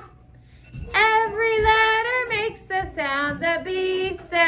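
A high voice singing a children's letter-sound song for B, in held, sung notes; it starts about a second in after a brief quiet gap.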